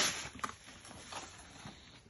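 Plastic bucket of water being lifted and tilted for pouring: a noisy rush at the start, then a few light taps and knocks.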